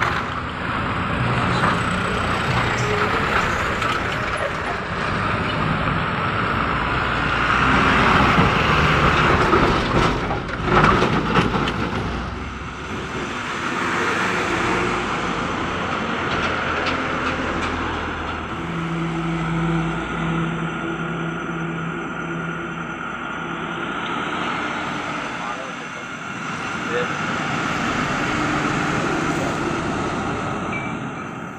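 Road traffic: trucks and other vehicles running past with engine and tyre noise, a pitched engine drone coming and going as they pass.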